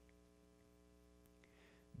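Near silence with a faint steady hum underneath, and a brief soft hiss near the end.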